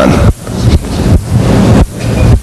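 Loud, uneven rumbling noise on the microphone, strongest in the low end, coming in irregular surges like wind or handling noise on the mic.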